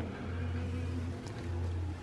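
A steady low hum of background noise, with faint hiss above it.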